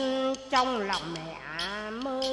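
Vietnamese xẩm folk music: a short held note, then one long note that slides down in pitch about half a second in and climbs slowly back up.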